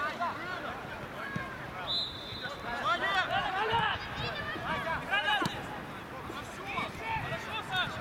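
Football players shouting and calling to each other on the pitch, a string of short loud calls. A brief, steady, high whistle-like tone sounds about two seconds in.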